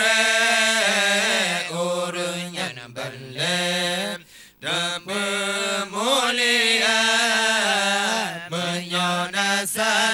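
Unaccompanied male voices chanting an Acehnese dikee, a devotional religious chant, into microphones: long held, melismatic notes that bend up and down, with a short breath break about four seconds in.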